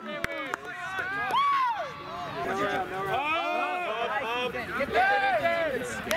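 Several voices of players and sideline teammates shouting and calling out over one another, with no clear words.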